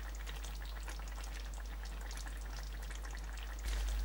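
Chopped vegetables frying in oil in a hot pan: a steady, fine sizzling crackle, with a low hum underneath.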